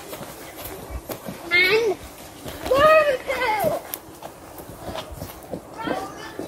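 A young child's voice making two wordless, sing-song calls, about one and a half and three seconds in, over soft footsteps of rubber boots on grass.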